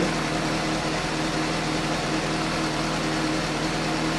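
Suzuki GSX-S750's inline-four engine idling steadily on freshly fitted iridium spark plugs, running smooth and crisp.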